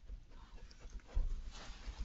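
Badger cubs shuffling about in straw bedding inside an artificial sett: rustling straw with soft low knocks, the heaviest about a second in, followed by a louder burst of rustling.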